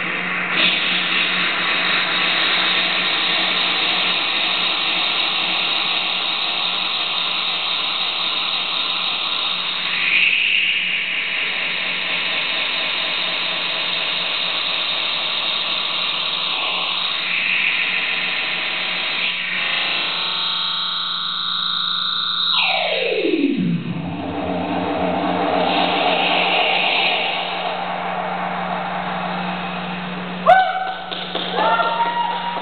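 Electronic noise music from effects pedals through a small amplifier: a dense, distorted wash of noise over a steady low hum. About three-quarters of the way through, a tone sweeps steeply down in pitch.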